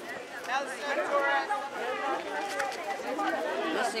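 Crowd of schoolchildren chattering, many voices talking over one another.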